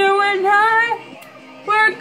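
A girl singing a pop song over a karaoke backing track: a held, sung phrase that ends about a second in, a short break with just the backing, then the next line starting near the end.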